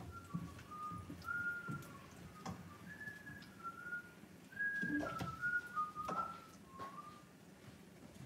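A person whistling a tune: a string of about a dozen short held notes stepping up and down in pitch. A few light clinks of a cooking utensil against a pan are heard with it.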